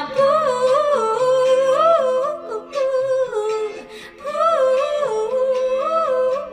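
A woman humming a wordless, wavering melody with vibrato over soft held chords of accompaniment, in phrases with a brief pause about four seconds in.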